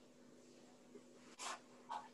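A dog gives two short barks, half a second apart, about a second and a half in.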